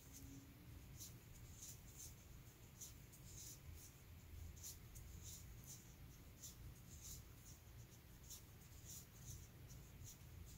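Near silence with faint, scratchy rustles of yarn being worked with a crochet hook, a short stroke every second or so as the stitches are pulled through, over a low steady hum.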